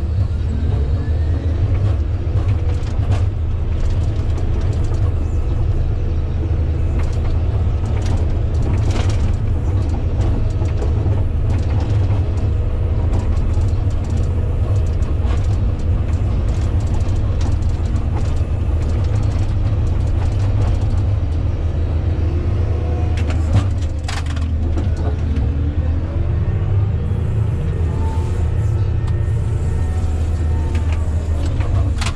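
Komatsu GD655 motor grader's diesel engine running steadily under load, heard from inside the cab, with clicks and rattles from the machine as it grades a dirt road. Roughly three-quarters of the way through the engine pitch dips briefly and then climbs back.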